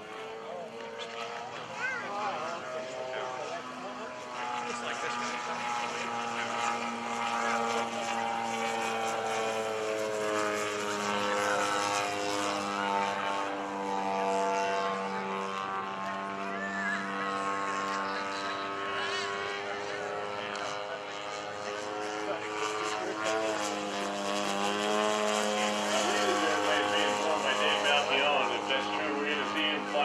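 Engine and propeller of a large radio-controlled scale Pitts Model 12 biplane flying aerobatics, its note rising and falling in pitch as it manoeuvres and growing louder near the end.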